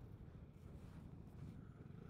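Near silence, with only a faint, steady low rumble of the Vespa GTS 300 scooter's single-cylinder engine at low speed, muffled by the mic inside the rider's helmet.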